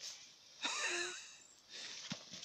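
A young child's short, wavering vocal sound about half a second in, with soft crunching of boots stepping in fresh snow.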